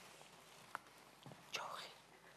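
A person whispering faintly: a short breathy whisper near the end, after a small click about halfway through.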